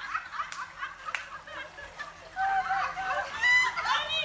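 High-pitched cackling laughter from onlookers, starting about two seconds in and getting louder toward the end. A couple of short sharp slaps come in the first second or so.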